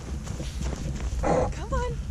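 Boston Terrier puppy barking once, briefly, a little past halfway, over a steady low rumble.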